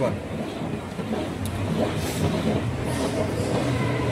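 A metal disc rolling on its edge round a polished steel gravity-well funnel, a steady rolling rumble as it spirals toward the central hole.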